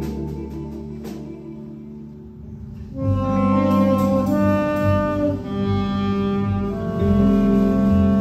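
Live jazz band: double bass and electric guitar hold low notes quietly, then about three seconds in the saxophones come in loudly with a line of held melody notes over the band.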